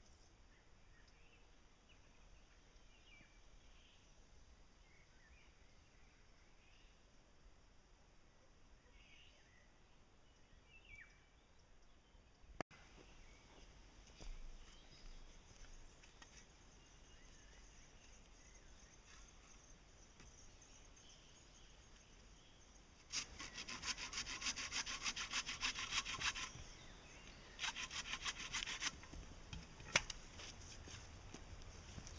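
Faint high chirps, as of small birds, over a quiet outdoor background. Near the end come two bursts of rapid rasping strokes on wood, the first about three seconds long and the second shorter.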